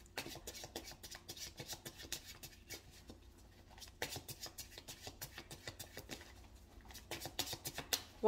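Tarot cards being shuffled by hand: a faint, fast, irregular run of card clicks and flicks, with a small burst of louder ones about four seconds in.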